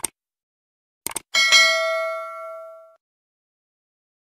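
Subscribe-button animation sound effect: a short click, a quick double click about a second in, then a notification bell ding that rings and fades away over about a second and a half.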